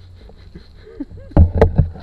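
Loud knocks and thumps of an action camera being handled, starting about one and a half seconds in.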